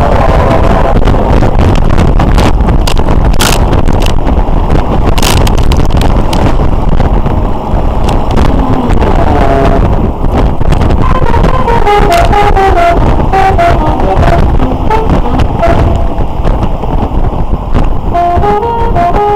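Motorcycle engine and wind rumbling while riding, with the bike's radio audible; from about halfway through a horn-like melody of stepped notes plays from the radio.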